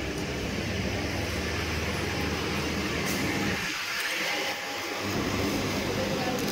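Steady indoor din of a busy fast-food restaurant: a low machine hum under a wash of background noise, which thins out for about a second near the middle.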